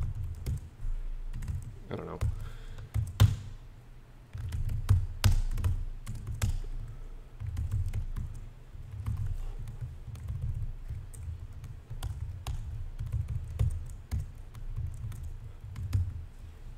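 Computer keyboard typing: irregular runs of keystroke clicks with short pauses as lines of code are entered.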